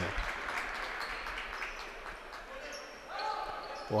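Indoor basketball arena during a stoppage in play: steady crowd murmur echoing in the hall, with a few faint knocks of a basketball bouncing on the hardwood. A raised voice comes in near the end.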